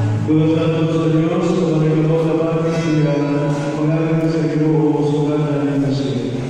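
A group of voices singing a slow hymn together in long, held notes, in a reverberant church.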